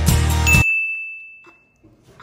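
Intro music with a steady beat cuts off about half a second in, leaving a single high ding that rings on alone for just over a second.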